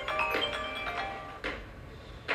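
Mobile phone ringtone, a quick melody of short, high chiming notes that dies away about a second in. A short knock follows about a second and a half in.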